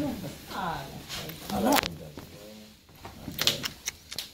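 A man speaking Romanian in short, hesitant fragments, with a few sharp clicks in between.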